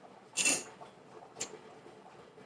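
A whisk scraping the bottom of a saucepan while stirring a butter-and-flour roux: one longer scrape about half a second in, then a brief one.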